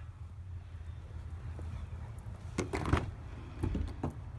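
Phone handling noise over a steady low rumble, with a loud burst of rustling and bumping just before three seconds in and a shorter one near the end, as the phone is carried from the dashboard to the rear seat of a pickup cab.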